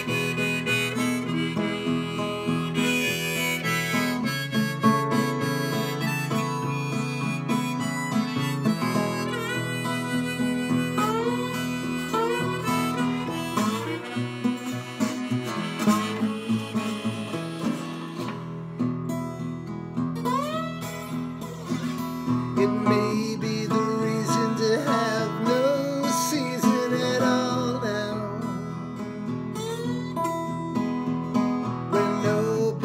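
Harmonica played from a neck rack over a strummed acoustic guitar, an instrumental break in a song. The harmonica melody has many notes bent upward in pitch, over steady guitar strumming.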